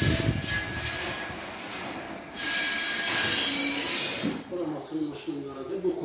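Sectional garage door rolling up on its tracks: a rumble with a steady metallic squeal over the first couple of seconds, then a loud hiss for about two seconds, with a voice near the end.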